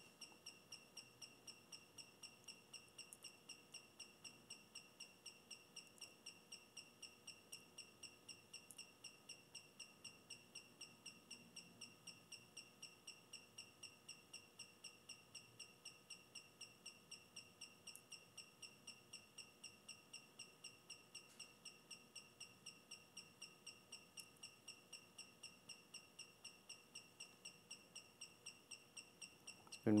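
Faint, steady high-pitched whine with a regular chirping pulse, about four to five a second, from a brushless 3-axis gimbal's motors as the Alexmos SimpleBGC controller shakes the roll axis during auto PID tuning.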